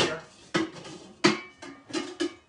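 Cookware being handled off to one side: about four sharp metallic knocks, each with a short ring, as a pot is picked out from among others.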